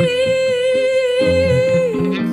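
Live band music: one long held melody note with a slight waver, sliding down just before the end, over changing bass notes.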